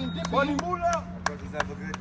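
Men's voices talking in a group, broken by a few short, sharp clicks in the second half.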